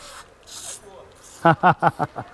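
Hand trigger spray bottle spritzing liquid onto a vehicle door's window frame: three short hissing squirts in the first second or so, the middle one the loudest.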